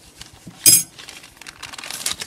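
Metal forks clinking against a plate as they are set down: one sharp, ringing clink about two-thirds of a second in, with lighter clicks around it.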